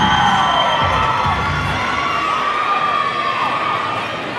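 Arena crowd cheering for a performer, with many overlapping high-pitched shouts and screams from young voices, easing off a little near the end.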